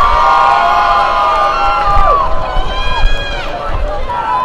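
Audience cheering for a graduate: several long, high whoops held together, dropping off about two seconds in, then a second round of shorter whoops.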